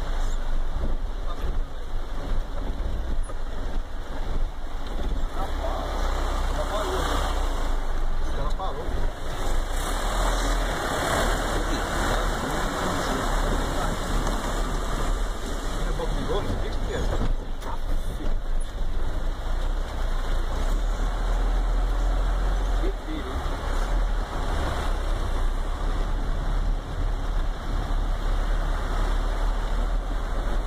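Heavy rain and water running over a flooded street, a steady noisy rush with a low vehicle engine rumble underneath.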